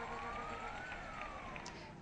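An emergency-vehicle siren wailing faintly. It makes one slow rise in pitch, peaks about a second in and then falls, over steady background noise.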